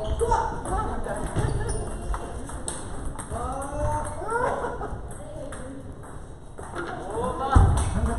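Celluloid-style table tennis balls clicking sharply off bats and tables during rallies in a large hall, with voices throughout and one low thud shortly before the end.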